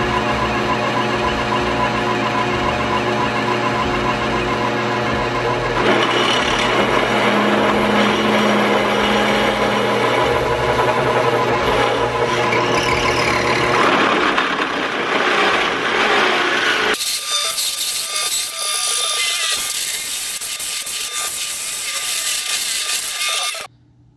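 Drill press running a one-inch bimetal hole saw through square steel tubing: a steady motor hum under the grinding of the cutter in the steel. The sound changes abruptly about six and about seventeen seconds in.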